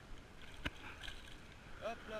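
Faint wash of shallow sea water around a wader's legs, with a single sharp click about two-thirds of a second in and a brief voice near the end.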